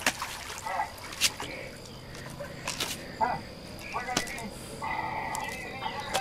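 Faint, brief voices and a few sharp clicks and knocks of handling, over a thin steady high hum.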